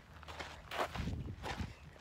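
Footsteps on a dirt hiking trail: a few soft scuffs, with a low rumble coming in about halfway through.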